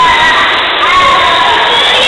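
Loud, steady hubbub of many children shouting and playing at a swimming pool, their voices overlapping into a constant din.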